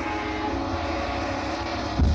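Electronic organ holding a steady sustained chord over a low rumble, part of a home-recorded rock band jam.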